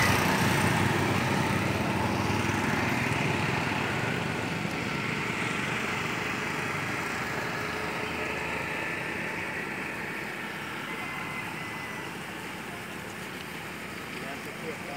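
A motorcycle engine passing close by, loudest at first and then fading steadily as it rides away.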